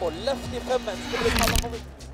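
Spectators shouting and cheering as a Toyota Yaris WRC rally car goes past over a jump on a gravel stage, its engine note steady underneath. A short loud burst of noise comes about one and a half seconds in.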